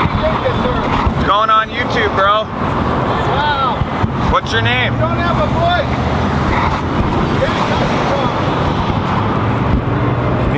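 Road traffic passing through an intersection, with a vehicle's engine hum building in the second half as a pickup truck drives by. Wind buffets the microphone. Raised voices call out during the first few seconds.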